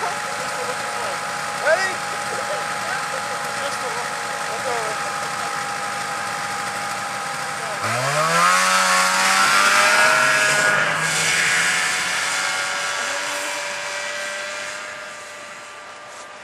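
Vintage Ski-Doo snowmobile's two-stroke engine running steadily at low speed, then revving up about halfway through as the sled accelerates away, rising in pitch and loudness, then fading with distance.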